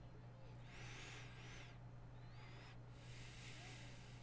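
Near silence: room tone with a steady low hum, and faint high-pitched wavering sounds about a second in and again a little later.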